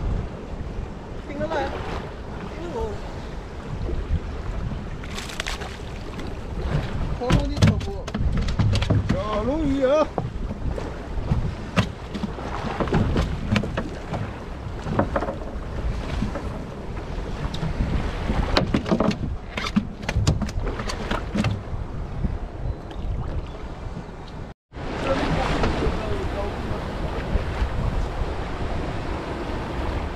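Wind buffeting the microphone and sea water washing against the side of a boat, with people's voices at times and many short clicks and knocks from fishing gear and handling on deck.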